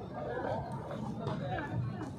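Indistinct chatter of people's voices talking, with no words picked out.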